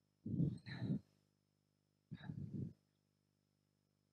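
Two short, indistinct vocal sounds about two seconds apart, over a faint steady low hum.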